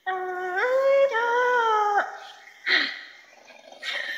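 A woman singing Hmong kwv txhiaj in the lug txaj style, unaccompanied, holding long wavering notes that slide up and down. The line breaks off about two seconds in, followed by a short breathy sound and a pause.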